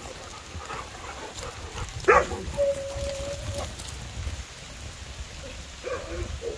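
A dog gives one sharp bark or yelp about two seconds in, followed by a steady, even-pitched whine lasting about a second.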